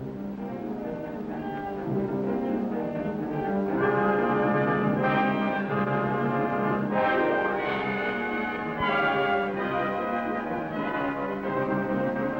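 Dramatic orchestral background music led by brass, with held chords that swell in loudness a few seconds in.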